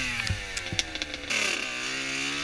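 2000 Kawasaki KX80 two-stroke 80cc dirt bike engine coming off the throttle, its revs falling steadily, with a few sharp knocks in the first second, then settling and starting to rise again near the end.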